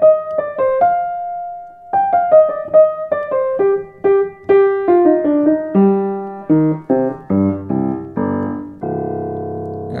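1920s Blüthner upright piano, restrung and repinned, being played: a melody of separate notes in the middle register, then a line stepping down into the bass, ending on a held low chord.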